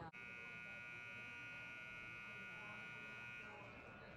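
Ice rink's horn sounding one steady, high buzz for about three seconds, then stopping near the end: the signal that play is about to start.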